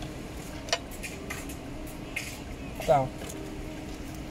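A few light clicks and rustles of wiring and plastic plug connectors being handled, over a faint steady hum.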